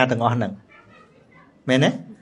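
Speech only: a man talking in Khmer, with a pause of about a second in the middle before he goes on.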